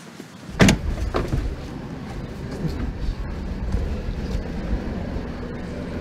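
A car door slams shut, followed about half a second later by a smaller knock. Then the steady low rumble of a car running is heard from inside the cabin.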